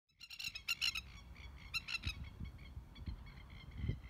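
Masked lapwings giving bursts of rapid, rattling alarm calls, the loudest in the first second and again near two seconds, fainter after that. Scattered low thumps sound under the calls.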